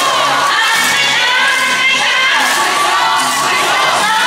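A group of voices shouting and chanting together over yosakoi dance music, the unison calls of a yosakoi dance routine.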